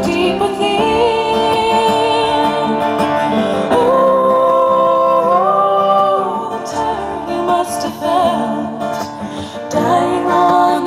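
Live folk song: acoustic guitar strummed under long held female vocal notes without words.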